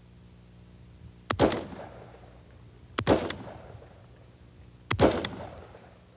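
Semi-automatic hunting rifle fired three single shots, one round per trigger pull, about two seconds apart, each shot trailing off in a short echo.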